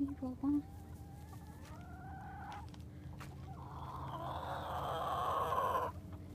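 Backyard chickens calling: three short low clucks at the start, then a long call rising in pitch, and a rooster crowing with a louder, rougher drawn-out call that runs to near the end.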